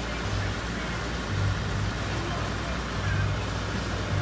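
Steady outdoor street background noise, with a low rumble that swells and fades three or four times.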